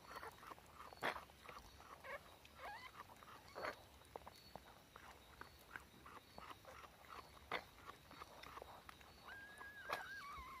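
Mother dog licking a newborn puppy still in its birth sac: quiet, wet licking and smacking clicks, a few louder ones. A few brief high squeaks, and near the end a longer high whine that falls in pitch.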